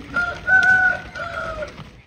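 A rooster crowing once, one long call of about a second and a half that dips slightly toward its end.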